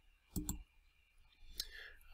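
Two quick clicks of a computer mouse about half a second in, over a short dull bump.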